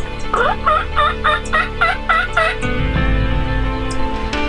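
Wild turkey calling: a run of about seven quick, evenly spaced notes lasting a little over two seconds, each dipping and rising in pitch, over background music.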